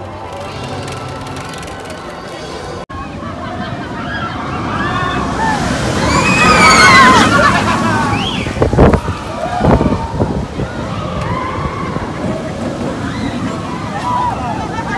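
Steel roller coaster train rushing past on its track, its noise swelling to a peak about halfway through, with riders screaming over it. A few sharp knocks follow as it goes by. Before a cut about three seconds in, music with steady notes plays.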